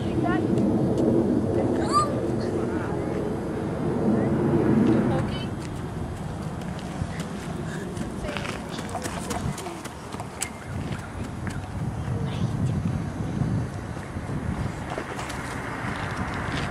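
Indistinct talking, loudest in the first five seconds, then a quieter stretch of background noise with scattered short clicks.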